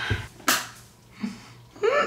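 A single sharp click about half a second in, with a brief soft vocal sound a little later.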